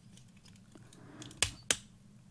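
Small plastic X-wing starfighter toy's folding wings being worked by hand: faint handling ticks, then two sharp clicks about a quarter second apart, about one and a half seconds in.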